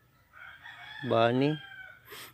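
A rooster crowing, one long call lasting over a second, with a man's short spoken word over the middle of it.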